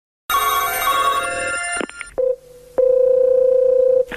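Telephone call sounds: first a brief burst of bright ringing tones, then a click and a ringback tone, a steady single-pitched beep about a second and a half long, as the outgoing call rings before it is answered.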